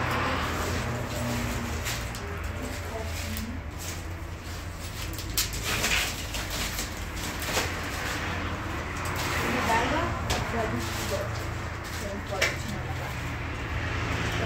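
Plastic crates knocking and clattering as they are lifted and moved, a few sharp knocks at irregular moments over a steady low hum.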